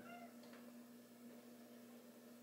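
Near silence with a steady low hum, broken at the very start by one brief, faint high-pitched call lasting about a third of a second, followed by a faint click.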